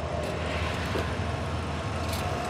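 A small car's engine and road noise as it is driven, a steady low drone with no breaks.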